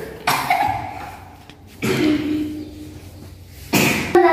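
A child's short vocal sounds, two brief voiced calls about a second and a half apart, then a sharp cough-like burst near the end.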